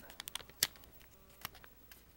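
A few scattered sharp clicks and crinkles from hands handling crumpled aluminium foil and a piece of tape, the loudest a little over half a second in.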